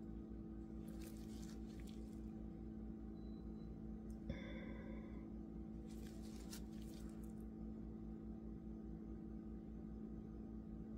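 Steady low hum, with two brief soft hissing noises and, about four seconds in, a click and a short tone.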